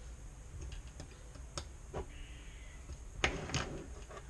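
Scattered small clicks and taps of hardware being tightened and 3D-printed plastic parts being handled on a desk, with two sharper clicks about three seconds in.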